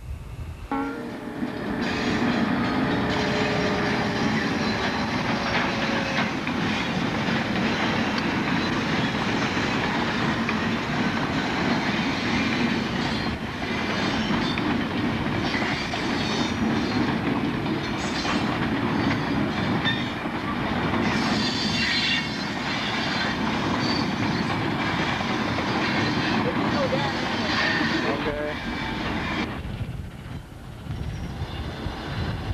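Freight cars rolling past at close range: steel wheels on rail, clacking over the rail joints, with some wheel squeal.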